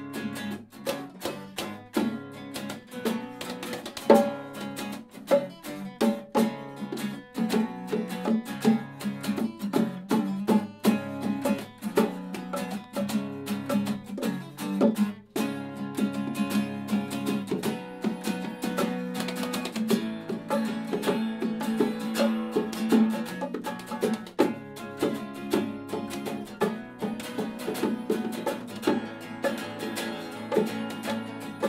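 Two acoustic guitars strummed and picked together, with bongos played by hand, in a steady rhythm: a small band playing live.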